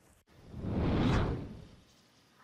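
Whoosh sound effect for a TV news graphic wipe transition, swelling to a peak about a second in and then fading away.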